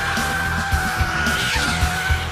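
Car tyres squealing in one long, slightly falling tone as a Ford Focus test car corners hard, over rock music with a steady beat.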